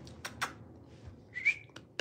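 Several sharp clicks and one short whistle-like chirp about one and a half seconds in, sounds made to get a dog's attention and call it over.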